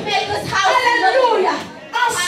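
A woman's voice amplified through a microphone and PA in a large hall, loud and with strongly rising and falling pitch, dropping away briefly near the end.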